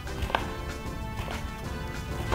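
A chef's knife chopping diced eggplant on a wooden cutting board, a few strikes about half a second apart, over background music.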